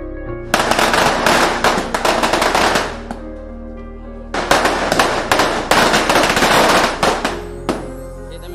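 Firecrackers going off in two long, rapid volleys of sharp bangs. The first starts about half a second in and lasts over two seconds; after a short pause the second runs for about three seconds.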